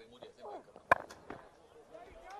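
Cricket bat striking the ball once, a single sharp crack about a second in, as the batsman lofts a shot over the off side. Faint voices from the field sound just before it.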